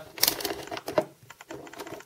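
A run of light, irregular plastic clicks from a handheld digital multimeter's rotary selector dial being turned through its detents to set the current range.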